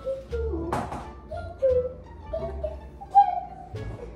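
A simple sung tune: one wavering melodic line, with a sharp knock about three-quarters of a second in.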